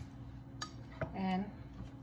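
Light clinks of kitchenware on a plate, twice in the first second, followed by a brief hum from a woman's voice.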